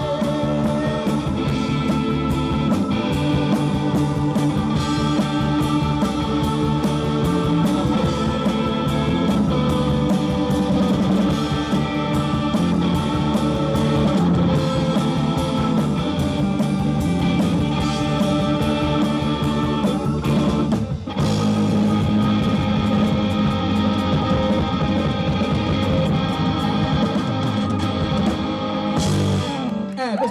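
Live rock band playing loud with electric guitars, drums and keyboards. The band breaks off briefly about two-thirds of the way through, comes back in, and stops just before the end, closing the song.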